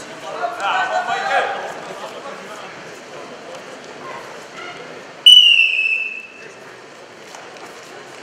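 A referee's whistle blows one sharp blast about five seconds in, about a second long, its pitch dropping slightly; it is the loudest sound. Earlier, voices shout from around the mat.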